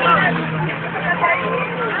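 Steady low hum of a vehicle engine idling, heard from inside the passenger cabin, with soft voices chattering underneath.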